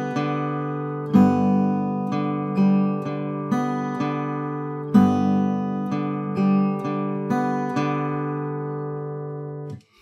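Eastman AC-508 steel-string acoustic guitar, Travis-picked with a pick and fingers over an easy G chord voicing: bass notes under plucked treble strings, everything left ringing. The strings are damped to silence just before the end.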